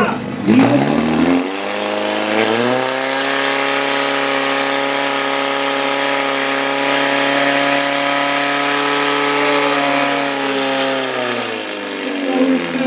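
Portable fire-sport pump's engine revving up over the first couple of seconds, then running at high, steady revs; its pitch drops near the end.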